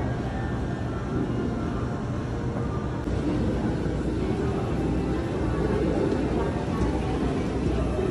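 Steady background hum of a large indoor public space: a continuous low rumble with a faint murmur of distant voices.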